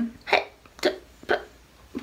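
Three short, clipped vocal bursts from a woman, about half a second apart, the first heard as "hey".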